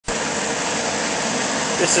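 A 175,000 BTU low-pressure gas jet burner running flat out, fed at 0.5 psi through a low-pressure regulator with the ball valve fully open: a steady, even rushing noise from its many flames.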